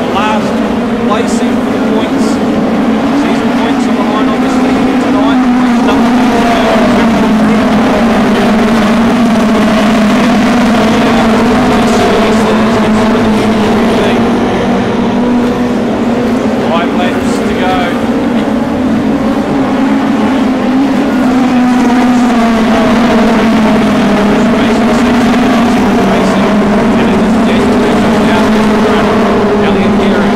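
A pack of winged mini sprint cars racing on a dirt speedway oval, their engines at high revs in a loud, unbroken drone whose pitch wavers up and down as the cars lift and accelerate through the turns.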